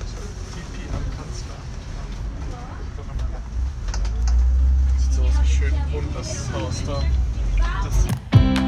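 Low, steady rumble of a MAN double-decker city bus's engine and running gear heard from inside while driving, swelling louder about halfway through. Faint voices of other passengers sit over it.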